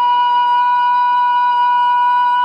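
A loud, steady high-pitched tone with overtones that holds one unchanging pitch throughout.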